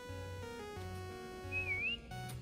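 Light instrumental background music with a repeating bass line and a stepping melody. Near the end comes a short, loud whistle that dips and then rises in pitch.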